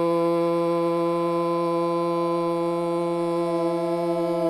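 A long 'Om' chanted in unison by a group of voices, held on one steady low pitch without a break.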